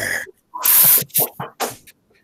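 The tail of a man's growled 'grrr' team cheer, cut off just after the start, then a loud breathy hiss about half a second in and a few short breathy puffs, close on the microphone.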